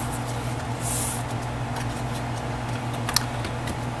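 Quiet handling of unboxing packaging: a brief papery rustle about a second in and a couple of faint clicks near the end, as a warranty card and a clear plastic packaging tray are handled. A steady low hum runs underneath.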